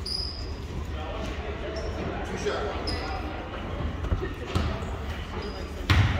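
Basketball bouncing on a hardwood gym floor, with a few short high sneaker squeaks over steady gym chatter.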